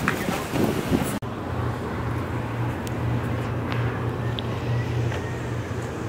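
A steady low motor hum over outdoor background noise, starting after a sudden cut about a second in and holding an even pitch to the end.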